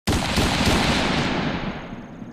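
Intro sound effect for a title card: a sudden loud boom with a rough crackle that starts abruptly, then fades away over about three seconds as its treble dies first.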